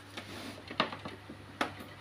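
A few light clicks and knocks of a power cord being plugged into the back of an HP LaserJet P1006 laser printer, the two sharpest a little under a second in and about a second and a half in.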